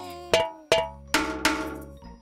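A spoon tapping upturned pots like drums: about four clanking strikes, roughly a third of a second apart, each ringing briefly.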